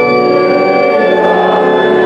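Organ playing a hymn tune in sustained chords that change about once a second.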